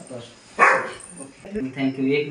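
A dog barks once, a short sharp bark about half a second in, and a person's voice follows near the end.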